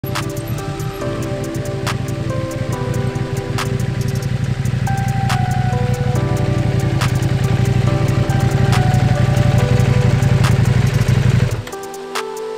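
KTM 790 Adventure R parallel-twin engine running at low speed as the motorcycle rides toward the microphone, growing louder, then shutting off abruptly near the end. Background music with a regular beat plays over it.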